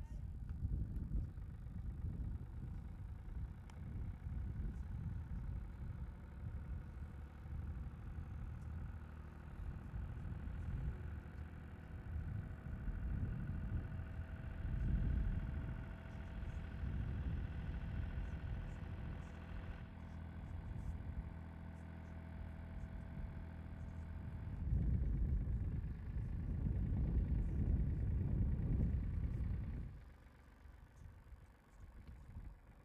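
A winch engine runs steadily while hoisting a man-riding cage up a mast on its cable. It gives a low rumble with a faint steady whine through the middle, and grows louder near the end.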